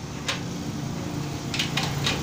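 A few faint, light metal clicks as pliers touch a welded steel slide-bolt latch, over a steady low background hum.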